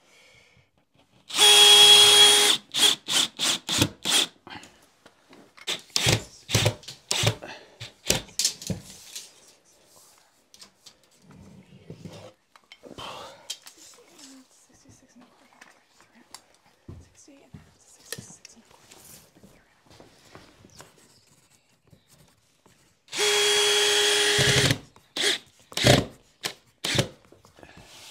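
A power drill driving screws into drywall: two short runs of steady motor whine, one just after the start and one near the end. Each is followed by a series of sharp taps and knocks.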